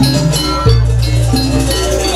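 Live Jaranan gamelan music: metal gong-chimes struck in a repeating pattern over low, held gong tones.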